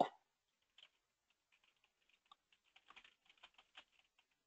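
Faint computer keyboard typing: light, irregular key clicks, sparse at first and more frequent in the second half.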